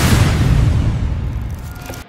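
Cinematic logo-intro sound effect: the deep rumbling tail of a boom-like impact hit, fading away steadily over about two seconds.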